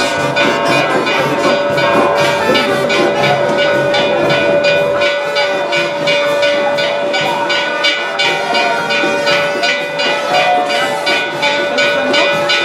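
Band music with drums keeping a quick, steady beat under brass, and one long held note.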